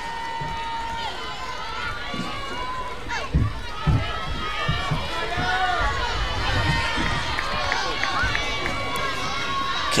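Ballpark crowd noise at a softball game: many overlapping voices shouting and chattering from the stands and dugouts at a steady, moderate level. A couple of dull thumps come about three and a half and four seconds in.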